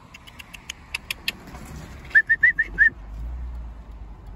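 A person calling to an animal with the mouth: a run of sharp clicks, then five quick, high, squeaky chirps about two seconds in.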